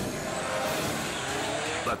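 Rock crawler engine running under throttle, its pitch climbing slowly, heard through a noisy, hissy recording.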